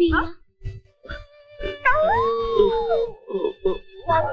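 A cartoon dog howling: one long call that rises and then falls, about halfway through, over held notes of the film's music score.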